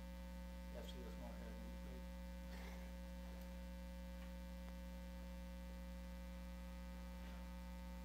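Steady electrical mains hum with several overtones, with a few faint, brief rustles and knocks about a second in and again near three seconds.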